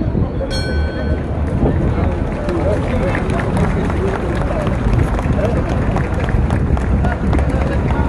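Street crowd: many voices talking at once, none clear, over a steady bustle with light scattered knocks. A short high-pitched tone sounds about half a second in.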